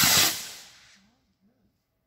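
A firework rocket launching, its hissing whoosh peaking at the start and fading away within about a second as it climbs.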